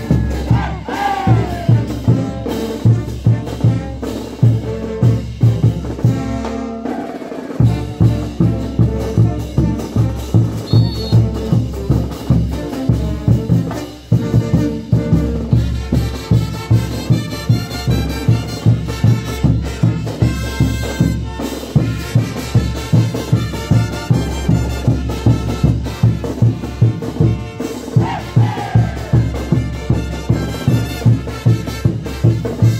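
Live brass band with drums playing tinku music: brass melody over a steady, heavy drum beat, with a brief drop in the music around 7 seconds and a short dip about 14 seconds in.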